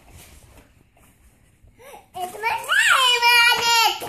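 A young child's high-pitched, drawn-out wordless vocal sound, starting about two seconds in, rising in pitch, then holding to the end.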